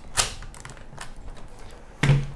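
Mamiya 6 film advance lever being worked, winding freshly loaded 120 film on toward the first frame: one sharp click about a quarter second in, then a few fainter clicks from the winding mechanism.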